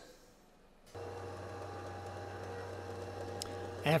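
Near silence for about a second, then a steady low hum that holds without change.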